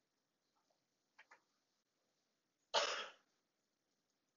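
A single cough, a sudden noisy burst about half a second long, about three-quarters of the way in, with two faint short sounds a second or so before it.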